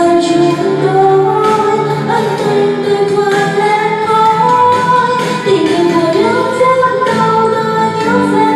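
Vietnamese pop ballad: a woman singing long, held notes over a steady backing track, recorded on a phone.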